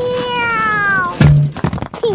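A child's long cry, falling in pitch, then a loud thump a little over a second in as a wrecking ball hits a wall of soft toy blocks. A few quick knocks follow as the blocks tumble down.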